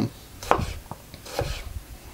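Marser STR-24 kitchen knife slicing a tomato on a wooden cutting board: a few short cutting strokes, the blade going through the slippery skin and tapping the board.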